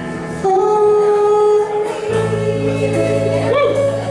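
Female vocalist singing a slow ballad, holding long notes, over a live band of keyboard, guitar, bass and drums; deep low notes join about halfway through.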